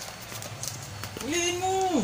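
Tapping of a dog's claws on a wooden floor, then, just past halfway, a single drawn-out vocal note lasting under a second that rises at its start and drops off sharply at its end.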